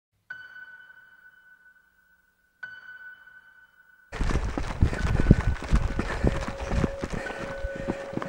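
Two held musical notes of the same pitch, about two seconds apart, each ringing and fading away. About four seconds in, the sound cuts abruptly to a handheld camera's field sound of running on a dirt trail: irregular footfall thumps and rumble from handling and movement.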